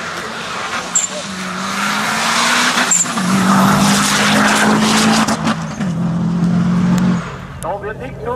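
Subaru Impreza WRX STI rally car's turbocharged flat-four engine at high revs as the car drives fast past, its note stepping with gear changes about a second in, around three seconds in and near six seconds, over tyre and road noise. The sound grows louder, holds, then drops away sharply about seven seconds in.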